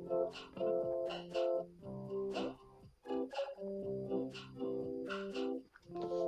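Background music: a plucked guitar playing a run of short notes.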